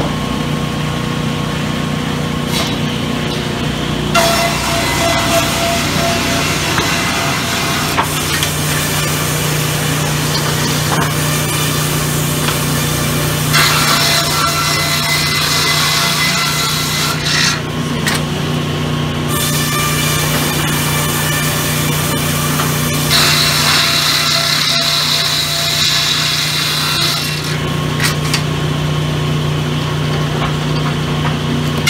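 Sawmill saws cutting teak wood: five or six cuts of a few seconds each, each bringing in a bright, high sawing sound over the steady hum of the running motors.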